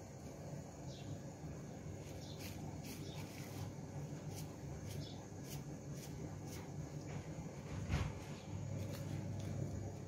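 Low steady hum of an aquarium pump, with scattered faint clicks and a single knock about eight seconds in.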